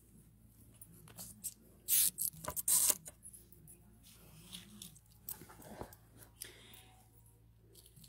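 Hands handling small objects right at the phone's microphone: a run of clicks, scrapes and rustles, the loudest about two and three seconds in.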